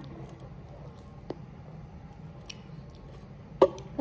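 Faint mouth and plastic-wrap sounds as a small twisted plastic-wrap pouch of Kool-Aid is bitten open in the mouth, with a single click about a second in and a short loud sound near the end.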